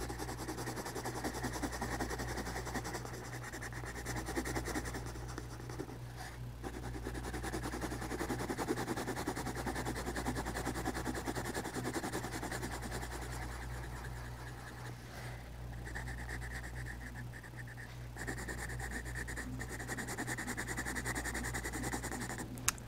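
Colouring pencil shading back and forth on drawing-pad paper: a continuous run of quick scratchy strokes with a few brief pauses. A steady low hum sits underneath.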